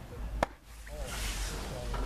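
A pitched baseball popping into the catcher's leather mitt: one sharp pop about half a second in, over background voices.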